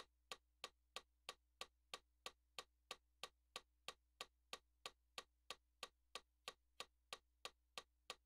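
Faint metronome clicking at an even, fast tempo, about three clicks a second, over a faint low hum.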